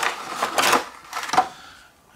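Clear plastic packaging crinkling and rustling as it is pulled from a cardboard box, then one sharp tap as it is set down on a stone countertop, fading quieter after.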